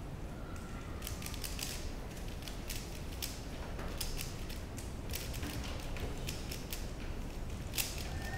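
A 3x3 speedcube being turned fast by hand: a quick, irregular run of plastic clicks and clacks as its layers are turned during a solve.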